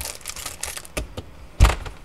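Handling noise: a scatter of light clicks and knocks from small hard objects being moved about, with one louder thump about a second and a half in.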